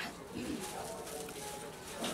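Low, indistinct murmur of women's voices in a room full of seated guests, with no clear words.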